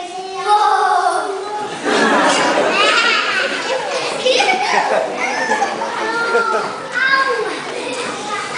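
Many young children talking at once, a babble of overlapping chatter that swells about two seconds in.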